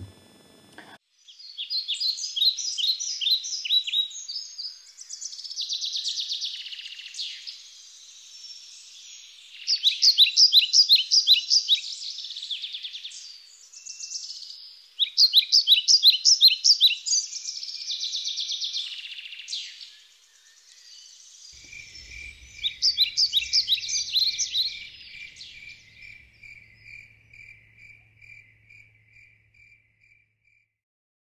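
Outdoor field ambience of birds and insects: repeated bouts of rapid, high chirping trills every few seconds, and from about two-thirds of the way in a steady series of chirps at about three a second, like a cricket, fading out near the end.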